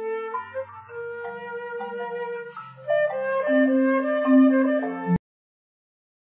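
A flute playing a melody from a flute and marimba duet, the marimba turned nearly all the way down after the two instruments were separated by a neural network, so only a little of it is left underneath. The music cuts off suddenly about five seconds in.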